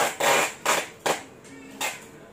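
Handling noise: a run of five short scrapes and knocks, the longest just after the start and the last near the end.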